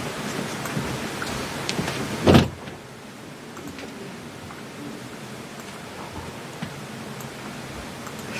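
Steady hiss of studio room noise, broken about two seconds in by one short, loud thump, after which the hiss is quieter.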